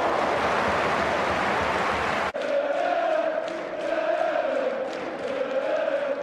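Football stadium crowd: a loud roar for about two seconds, cut off abruptly by an edit, then the crowd chanting in unison.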